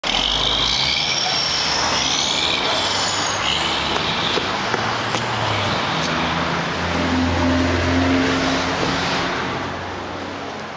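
Road traffic going by: a steady rush of vehicle noise, with high squealing tones in the first few seconds and a heavier vehicle's low engine drone swelling about seven to eight seconds in, then the noise fading near the end.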